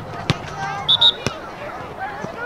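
A soccer ball kicked twice, two sharp knocks about a second apart. Between the kicks come two very short, loud high whistle blasts, and distant voices sound throughout.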